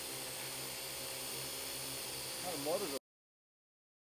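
AR.Drone 2.0 quadcopter hovering close by: a steady whir and whine from its four motors and propellers, with a brief voice near the end. The sound cuts off abruptly about three seconds in.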